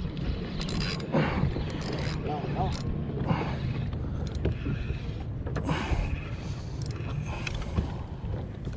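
A Penn Fierce II 3000 spinning reel being cranked to bring in a hooked fish, its gears turning with scattered clicks, over steady wind rumble on the microphone.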